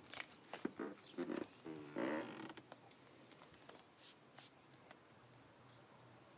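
Light handling noise around an open car door: a run of small clicks and rustles with a short creak about two seconds in, then two sharp ticks about four seconds in.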